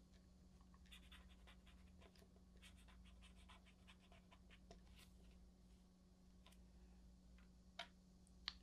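Pen writing on a small paper label: faint, quick scratchy strokes for a few seconds. Near the end a single light tap, as a fraction piece is set down on the table.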